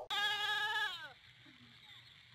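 A goat bleating once: a single wavering call about a second long that sags in pitch as it fades.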